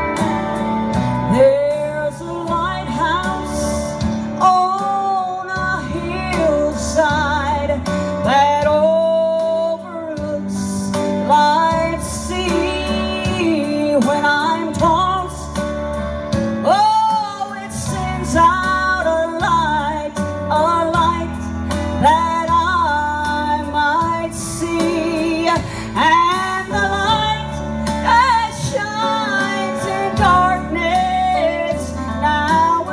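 A woman singing a Southern gospel song into a handheld microphone over instrumental backing with guitar.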